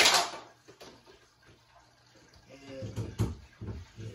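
A short, loud rush of noise at the very start that fades within half a second, then a low voice near the end.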